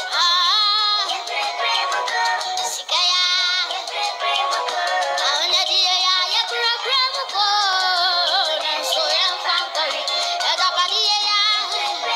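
A boy singing into a stage microphone, with long held notes that waver in pitch and quick runs between them.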